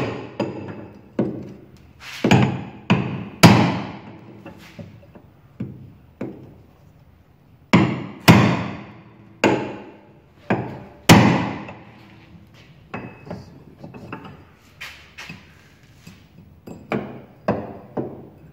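A steel bar striking the bent wheel-arch sheet metal of a ZAZ-965, sharp metal-on-metal blows that ring briefly, about fifteen at an uneven pace, a few of them much harder. The body metal is being straightened because it was bent into the front wheel's path and kept the car from turning left.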